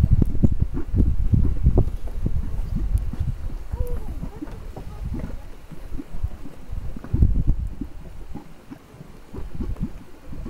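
Mudpot of thick grey mud bubbling: gas bubbles swell into domes and burst in a rapid, irregular run of low plops. The plops are busiest in the first two seconds and again about seven seconds in, and thin out near the end.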